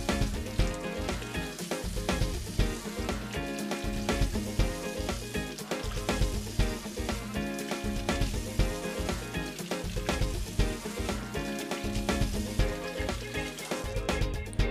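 Tap water running steadily into a stainless steel sink and over tomatoes being rubbed clean by hand, under background music with a steady beat.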